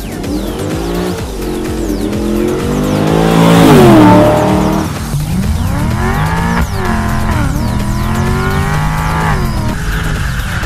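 HSV E2 GTS's 6.2-litre LS3 V8 accelerating hard through a stainless-header, full titanium dual three-inch exhaust. The revs climb, drop back at the gear changes and climb again. The sound is loudest about four seconds in as the car passes close by.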